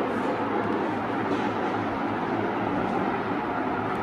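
A steady background rushing noise with a low hum under it, unchanging throughout.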